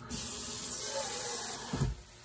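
Tap water running from a kitchen faucet into a stainless steel bowl, a steady hiss, with a low thump near the end.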